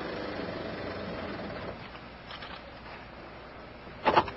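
Cab noise of a Chevrolet Silverado pickup rolling slowly as its transmission is shifted into park for the park-pawl test: a steady low rumble that slowly fades as the truck comes to a stop.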